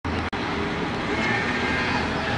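Steady road traffic noise from a town street, with a momentary dropout just after it starts.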